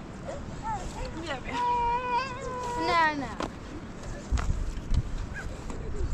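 A sheep bleating: one long, held bleat that wavers near its end. A few dull low thumps follow in the last two seconds.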